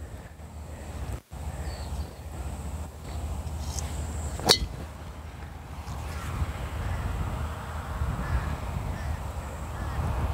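Wind rumbling on the microphone, with a single sharp crack about four and a half seconds in as a driver strikes a golf ball.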